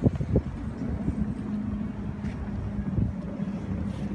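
Air force plane droning overhead as a steady low hum, with wind buffeting the microphone in gusts, hardest right at the start.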